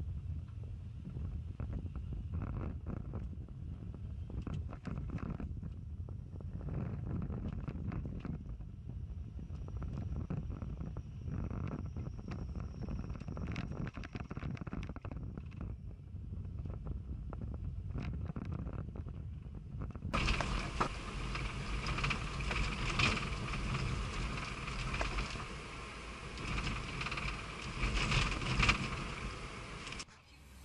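Low rumble of a car driving slowly in town and gathering speed, picked up by a camera on the dashboard, with scattered light knocks and rattles. About twenty seconds in, the sound cuts to a brighter, louder cabin noise of the car driving faster, with a few bumps.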